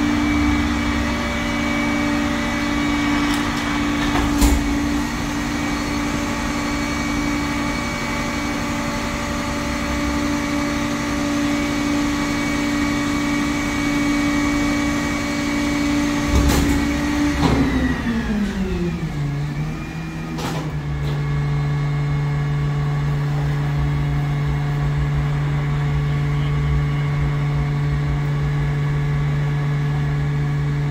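Refuse truck engine running at raised speed with a steady hum. About 17 seconds in, its pitch falls over a couple of seconds and settles to a lower, steady idle. A few sharp knocks sound over it.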